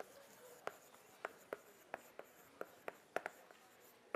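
Chalk writing on a blackboard: a string of about ten sharp, irregular taps with faint scratching between them.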